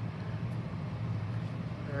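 Room tone: a steady low hum under a faint even hiss, with no distinct handling sounds.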